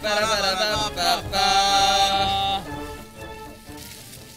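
A short comic musical sting added in editing: a quick melodic phrase that ends on one long held note. It cuts off about two and a half seconds in, leaving only a quiet background.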